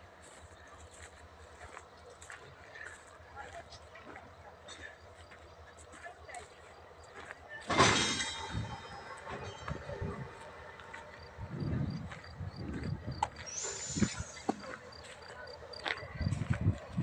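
An ÖBB freight train with its diesel locomotive at the station, faint at first. About eight seconds in comes a sudden loud sharp sound with high ringing tones that fade over about a second, followed by low uneven rumbling.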